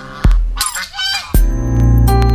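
A domestic goose gives a short, wavering honk about half a second in, over background music with steady bass notes.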